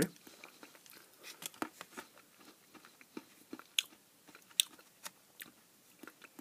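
Someone chewing a piece of marzipan: soft, irregular mouth clicks and smacks.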